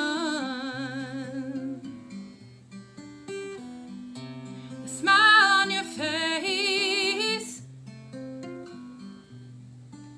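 A woman singing to her own Parkwood acoustic guitar. A held note with vibrato fades out over the first two seconds, the guitar plays on alone, a second held vocal phrase comes about five seconds in, then the guitar plays alone again.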